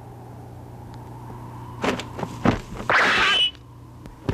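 Sword-fight sound effects: a few quick sharp knocks from about two seconds in, then a loud metallic scrape of about half a second as two sword blades grind together, over a low steady hum.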